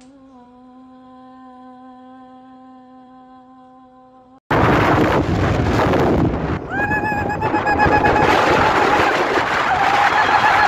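A voice hums one long, steady note. After a sudden cut comes loud wind buffeting the microphone, and from about three seconds later a woman sings a long, wavering held note over it.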